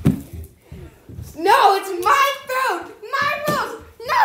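A child's voice talking or calling out, starting about a second and a half in, after a quieter first second.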